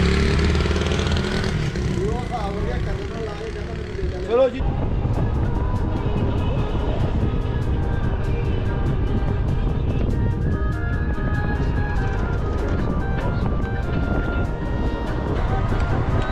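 Road vehicle noise with a motorcycle passing close and a few spoken words in the first four seconds or so, then an abrupt change to background music over a low road rumble.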